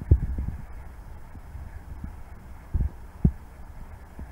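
Low rumble on the microphone with a few short, dull thumps, one at the start and two close together near the end.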